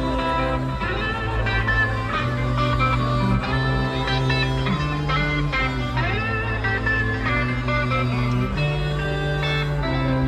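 Live heavy-metal band playing, an electric guitar melody with bent notes over sustained bass notes, heard from within the festival crowd.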